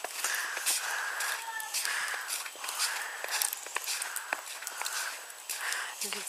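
Footsteps crunching through snow at a steady walking pace, about two steps a second.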